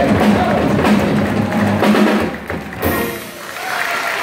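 Small jazz combo of upright bass, drum kit and archtop guitar playing live, with held notes through the first half. About three quarters of the way through a sharp drum and cymbal hit lands and rings on as the band closes the song.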